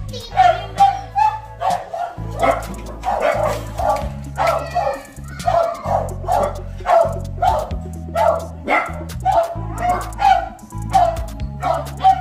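A dog barking over and over, about two to three sharp barks a second without a break, over background music.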